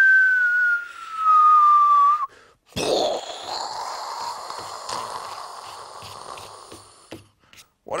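A man whistles one long note that slowly falls in pitch, imitating a firework rocket going off, and stops about two seconds in. Then comes a sudden burst of hissing explosion noise, which fades away over about four seconds.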